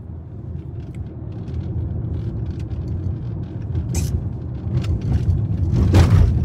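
Low, steady rumble of a moving car heard from inside the cabin, growing louder towards the end, with a brief hiss about four seconds in.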